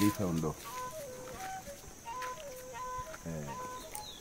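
A chicken clucking, with a short falling call about three seconds in, over a faint run of steady whistled notes that step up and down in pitch.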